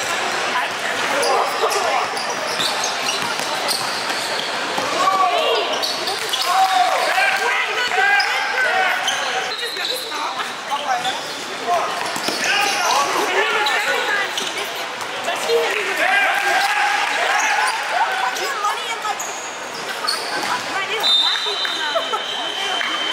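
Live game sound in a basketball gym: a basketball bouncing on the court amid the voices of players and spectators. A high steady tone starts near the end.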